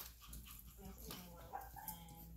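Chihuahua puppies whimpering and giving small yips, faint and scattered, as they play.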